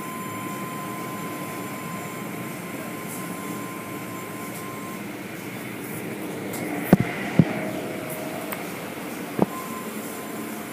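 Automatic car wash machinery running: a steady rumble of spinning brushes and water spray, heard through a window. A thin steady whine stops about halfway. Two sharp knocks come close together about seven seconds in and another near the end.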